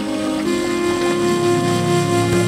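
Background music of sustained held chords, moving to a new chord about half a second in.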